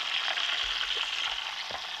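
Hot deep-frying oil sizzling steadily in a wok as a freshly fried taro-coated duck drains above it in a perforated skimmer, with a few faint crackles.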